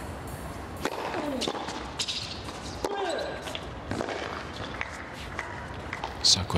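Tennis ball struck back and forth during a rally on a hard court: sharp racquet hits about a second apart, with a couple of short falling squeaks between them.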